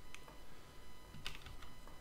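Computer keyboard keys clicking a few times, faintly, with one sharper click a little past the middle, as keys are pressed for a shortcut.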